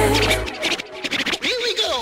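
Hip-hop track in which the bass of the beat drops out about half a second in, leaving turntable scratching: short clicks and quick up-and-down pitch glides.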